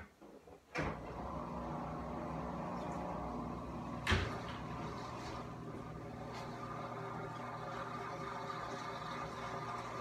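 A household appliance starts with a click about a second in and then runs with a steady hum. A single sharp knock, like a door or cupboard shutting, comes about four seconds in.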